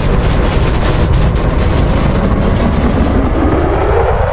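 Sci-fi film sound effect of a blazing energy column launching into the sky: a loud, steady rumbling rush with a deep low end, and a rising whoosh that starts about three seconds in.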